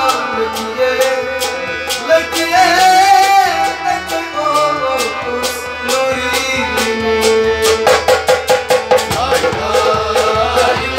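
Harmonium playing held chords and melody under male voices singing a folk-style song, with steady hand-percussion strokes that come faster about eight seconds in.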